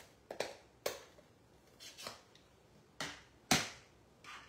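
Rubber-stamping supplies being handled on a craft table: about seven light, sharp clicks and taps at uneven intervals, the loudest near the end.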